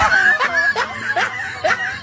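A person laughing in a quick run of short rising syllables, about two or three a second.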